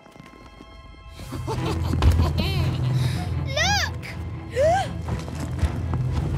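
Cartoon soundtrack: a low rumble of heavy boulders shifting starts about a second in and runs on under music, loudest around two seconds in. Three short rising-and-falling vocal cries are heard over it.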